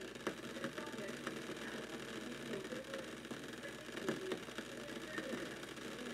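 Water heating in the glass lower bowl of a Bodum Pebo vacuum coffee maker on an electric stovetop, not yet at the boil. Bubbles form and collapse on the hot glass, giving a steady hiss and hum scattered with small ticks and crackles.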